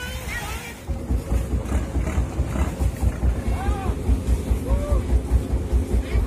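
Wooden passenger boat's engine chugging with a fast, steady low pulse, heard from aboard, with voices calling over it. For about the first second, wind and lapping surf with voices on the beach come before it.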